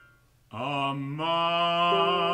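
A male operatic voice singing alone: long held notes with a slight vibrato, the line stepping upward. It enters about half a second in, after the preceding instruments have died away.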